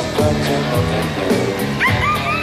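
Live rock band playing an instrumental passage with a steady drum beat. A short high glide, rising then falling, sounds near the end.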